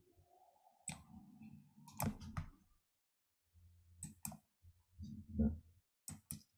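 Quiet computer mouse clicks: one about a second in, a quick cluster of three or four around two seconds, and a pair around four seconds. Faint low murmuring sits between them.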